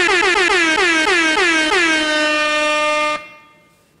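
DJ air-horn sound effect: a rapid string of short horn blasts, each dipping in pitch as it starts, then one long held blast that cuts off about three seconds in.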